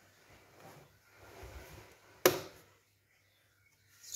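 A single sharp knock about two seconds in, over faint rustling from handling.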